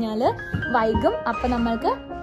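A woman talking over background music with bell-like tones.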